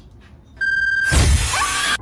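An edited-in comedic sound effect: a short steady high tone about half a second in, then a loud crash with a heavy low thump that rings on for almost a second.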